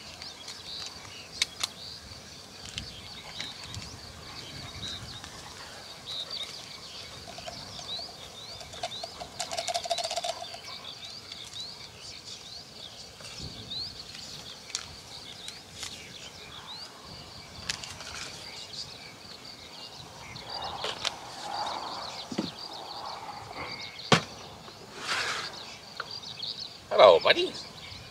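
Outdoor morning ambience dominated by many small birds chirping continuously at a high pitch, with scattered light clicks and knocks close by and a brief voice-like sound near the end.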